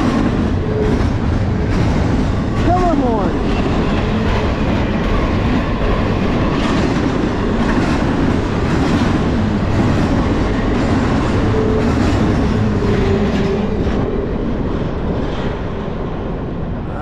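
Double-stack intermodal freight cars rolling past at speed: a steady rumble and rattle of steel wheels on rail, with repeated clicks over the rail joints. The sound eases off near the end as the last cars go by.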